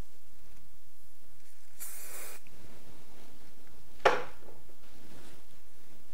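A short hiss of aerosol hairspray, about half a second long, about two seconds in. About two seconds later comes a single sharp knock, the loudest sound.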